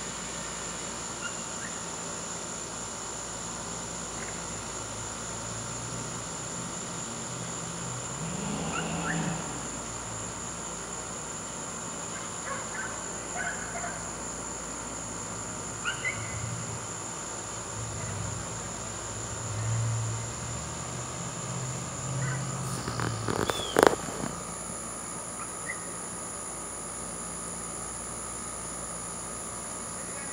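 Outdoor ambience: a steady high-pitched insect drone over a hiss, with a few short faint chirps. Low bumps of mic handling or wind come and go in the middle, and there is a sharp knock about 24 seconds in.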